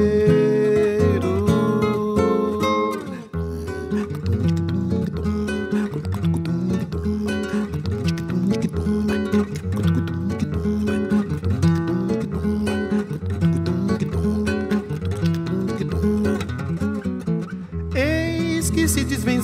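A Brazilian song's sung phrase trails off about three seconds in, and the nylon-string acoustic guitar (violão) carries on alone in a rhythmic plucked instrumental passage.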